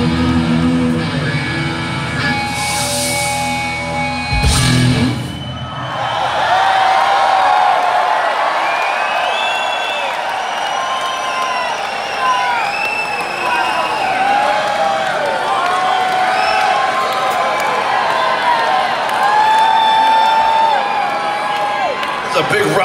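A rock band playing live with electric guitar, the song ending about five seconds in. Then a crowd cheers, shouts and whistles for the rest of the time.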